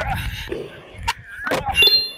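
Skateboard wheels rolling on concrete with sharp clacks of the board being popped and landed on a 360 flip. Near the end a bright bell-like ding rings out over it.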